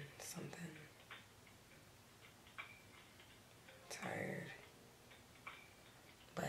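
Mostly quiet, with a woman's brief soft murmured vocal sounds just after the start and about four seconds in, and a few faint ticks between them.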